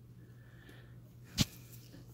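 A single sharp click about one and a half seconds in as a replacement BIOS chip is pressed down into its socket on an ASUS Z9PE-D8-WS motherboard, over a steady low hum.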